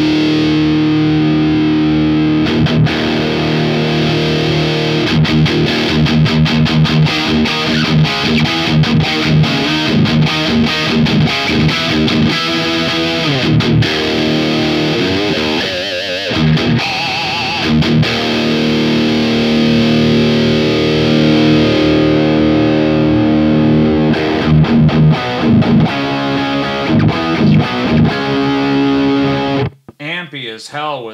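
Heavily distorted electric guitar played through a Hotone Mojo Attack pedalboard amp with the gain dimed and the boost on, with a little reverb. It plays fast picked notes and held chords, with a wavering bend about halfway through, and stops abruptly just before the end.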